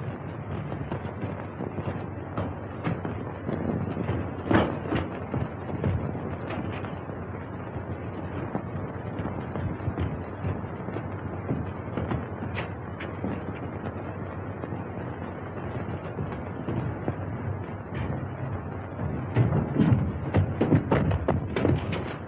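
Steady hiss and crackle of an old optical film soundtrack, with scattered clicks. Near the end comes a quick run of heavier thumps.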